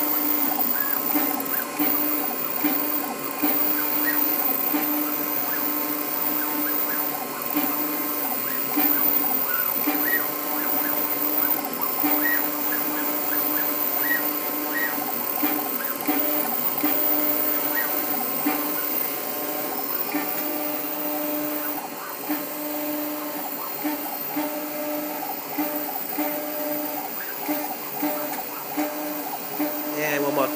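New Hermes Vanguard 4000 engraving machine running a job, its spindle spinning a diamond drag bit across anodized aluminum while the carriage motors move the head. A steady motor hum with a tone that cuts in and out every second or so, and faint light ticks.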